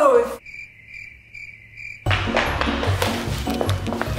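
Cricket-chirping sound effect: a steady high chirp pulsing a few times over about a second and a half against near silence. It cuts off abruptly about halfway through, when background music with a repeating bass beat starts.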